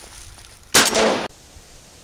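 A single shotgun shot about three-quarters of a second in, sudden and loud, its report ringing for about half a second before cutting off abruptly.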